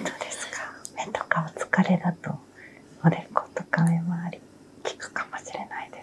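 Whispered, close-up conversation between a massage therapist and her client: soft speech that breaks off into short pauses.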